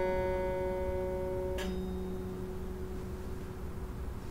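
Double-manual harpsichord's final chord dying away. About a second and a half in the keys are released and the dampers stop most of the strings with a short click, leaving a low note ringing faintly.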